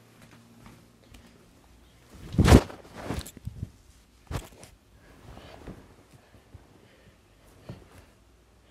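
Handling noise from a phone being moved about and rubbed against bedding: a loud thump and rustle about two and a half seconds in, then scattered knocks and soft rustles.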